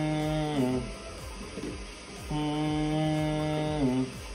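Low, chant-like hummed tone: two long held notes, each about a second and a half, sliding down in pitch at the end, with a quieter gap between them.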